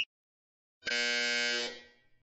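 Workout interval timer's buzzer sounding once, a long buzz of about a second that starts almost a second in and fades out. It marks the end of the 30-second work interval.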